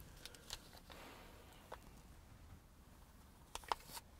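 Near silence: faint room tone with a few soft clicks, two of them close together near the end.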